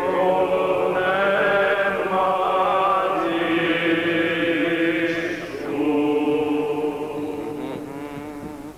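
Byzantine ecclesiastical chant by male voices: a slow, melismatic melody winding over a steady held drone note (the ison). The line breaks briefly about five and a half seconds in, resumes, and tails off near the end.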